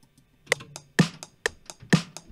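Programmed drum loop of sampled one-shots playing back in FL Studio: a snare hit about once a second with closed hi-hat ticks on every other step between, about four ticks a second, starting about half a second in, with no kick yet.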